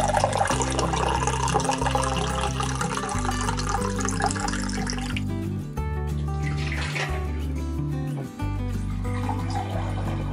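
Filtered water running in a thin stream from the tap of a stainless steel British Berkefeld gravity water filter into a drinking glass, stopping after about five seconds, then a short splash near the middle as the glass is tipped out into a stainless steel sink. Background music plays throughout.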